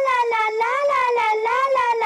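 A wordless wailing voice holding one long note that wavers slowly up and down in pitch.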